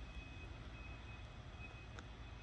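Faint outdoor background: a steady low rumble with a thin high-pitched tone that comes and goes.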